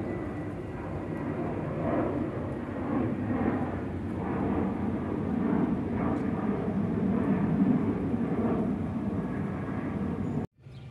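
Twin-engine jet airliner climbing out after takeoff: a steady rushing rumble of jet engines that grows louder over the second half.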